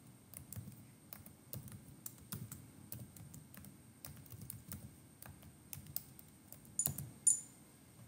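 Typing on a computer keyboard: a run of irregular key clicks, with two louder clicks about seven seconds in.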